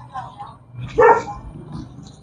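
A dog barking once, a short sharp bark about a second in, with a fainter sound just before it.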